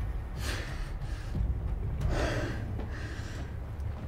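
A person breathing heavily: two loud breaths, about half a second in and about two seconds in, over a low steady rumble.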